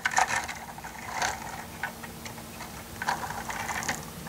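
Plastic LEGO truck and trailer pushed by hand across a smooth tabletop: small wheels rolling with light, irregular clicking and rattling of the bricks, a few louder clicks along the way.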